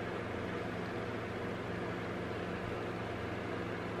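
Steady background hiss with a low hum underneath, unchanging throughout: room tone.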